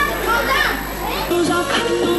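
Children's voices chattering and calling over one another. About a second and a half in, this gives way to music with a long held, wavering note.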